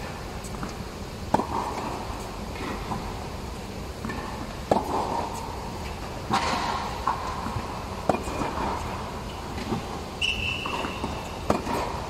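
Tennis balls being hit and bouncing, sharp pops every one and a half to two seconds that echo under an indoor tennis dome. A brief high squeak comes about ten seconds in.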